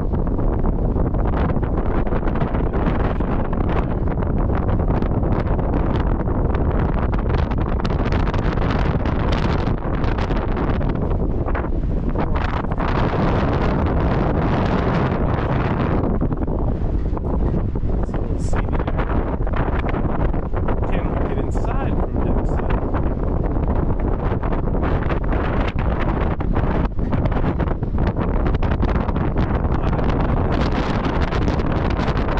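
Wind buffeting the microphone on the open deck of a cruise ship under way: a steady, heavy rush with most of its weight low down.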